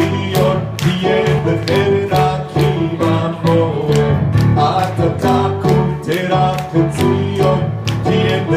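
A man singing a melody while playing rhythmic chords on a Yamaha CP40 Stage digital piano, with strong attacks in a steady beat.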